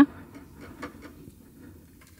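Faint small clicks and taps of a budgerigar nibbling with its beak at a fingertip on a tabletop.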